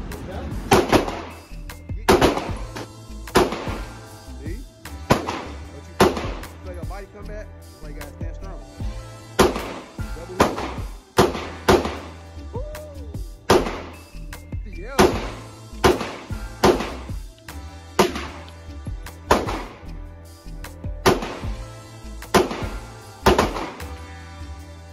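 Single gunshots fired one at a time at uneven gaps of about one to three seconds, roughly fifteen in all, with background music underneath.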